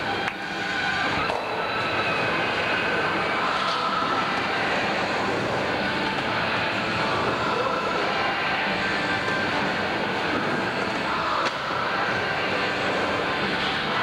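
Skateboard wheels rolling on a wooden vert ramp, a steady rumble, with voices of onlookers underneath.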